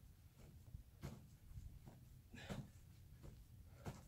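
Near silence, with three faint short sounds about a second and a half apart from a man doing star jumps on artificial turf.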